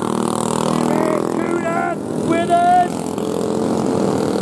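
Racing go-kart engines running at speed as karts pass on the track, a steady engine tone that is strongest in the first second and a half.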